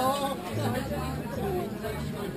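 Background chatter: several people talking at once, fainter than a close voice.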